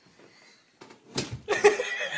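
A sharp knock about a second in, like a body bumping against a hard surface, then loud laughter near the end.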